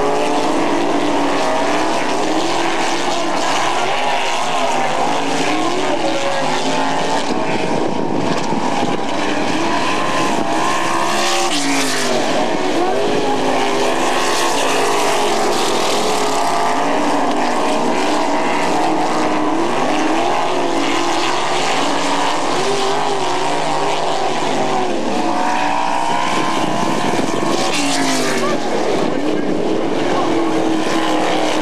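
A pack of winged sprint cars racing on a dirt oval, their V8 engines running hard together, the engine notes continually rising and falling as the cars pass and accelerate.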